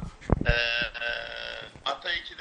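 A person's voice making one drawn-out, steady-pitched vocal sound of about a second, just after a short thump.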